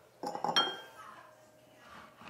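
Metal cutlery clinking as a knife and fork are set down on the counter: a few quick clinks in the first half second, one ringing briefly.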